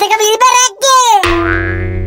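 Comic cartoon music cue: a quick wavering phrase that slides down in pitch, then one steady held note from a little past halfway.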